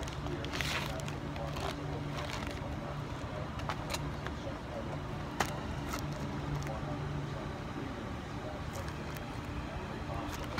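A plastic bag of frankincense resin and a cellophane-wrapped box of charcoal tablets being handled, giving scattered short crinkles and clicks, with a sharp click about five seconds in. Under it runs a steady low hum with background voices.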